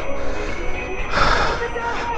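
Wind buffeting the microphone with a steady low rumble as a Kingsong 18XL electric unicycle rolls over tarmac, with a short breathy rush of noise a little past a second in.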